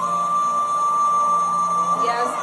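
One steady high-pitched tone, held without a break or any wavering in pitch.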